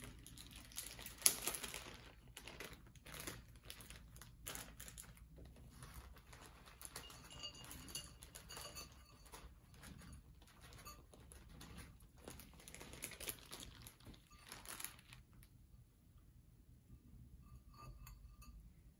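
A plastic bag of bonsai soil being opened and crinkled, with a sharp rip about a second in. Soil then pours and patters from the crinkling bag into a bonsai pot, and the rustling goes quieter near the end.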